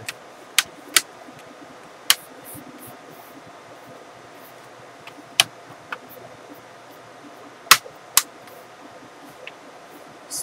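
Plastic LCD bezel of an HP ProBook 430 G1 laptop being pressed onto the screen lid, its clips snapping into place: a series of sharp clicks at irregular intervals over a steady low room hum.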